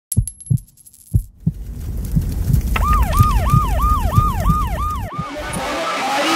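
Logo intro sound effects: a few deep thumps like a heartbeat, then a low bass rumble under a siren-like wailing tone that falls and jumps back up about three times a second, cutting off suddenly about five seconds in.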